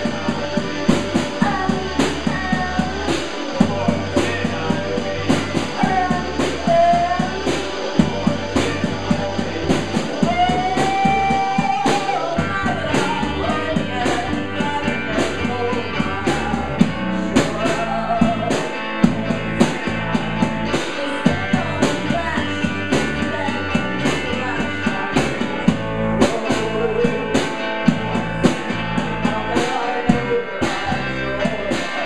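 A live rock-and-roll band playing: electric guitar, drum kit keeping a steady beat and a deep bass line, with a voice singing over it.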